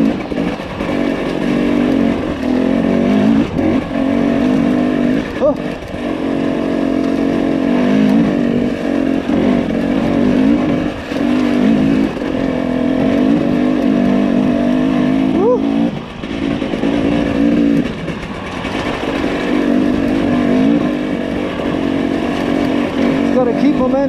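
Husqvarna TE300i two-stroke enduro motorcycle engine revving up and down under constantly changing throttle, with several short drops where the throttle shuts off and one sharp rev-up past the middle.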